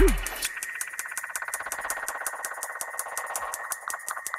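Drum and bass DJ mix going into a breakdown: the bass and kick drum cut out just after the start, leaving fast ticking hi-hats over a thin, steady buzzing synth tone.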